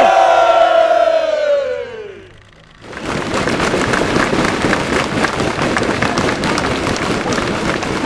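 Celebrating team members and spectators: a long held cheer sliding down in pitch fades out about two and a half seconds in. From about three seconds in, a crowd cheers and claps steadily.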